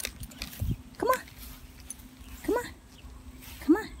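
Small grey terrier-mix dog giving three short, high whining yelps in excited play, tugging at and chasing a flying-disc toy.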